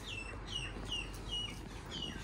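A bird calling over and over, a short high chirp that slides downward, about three times a second.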